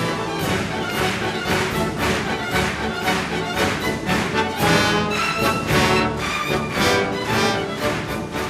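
A 72-piece symphony orchestra playing a lively classical piece with violins prominent and a steady, even beat.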